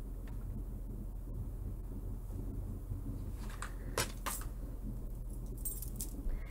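Light clicks and rustles of small objects being handled, a few faint ones near the middle, over a steady low electrical hum.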